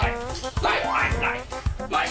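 Upbeat music with a steady thumping beat, about two thumps a second. Over it a man gives short, held, whiny calls of "lai" ("come").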